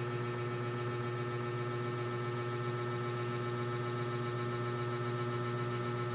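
Steady electrical hum with a strong low drone and a few fixed higher tones, unchanging throughout, and one faint click about halfway through.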